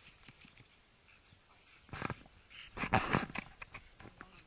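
Dog snuffling with its head down a rabbit burrow: quiet at first, then a short breathy noise about two seconds in and a longer one about three seconds in.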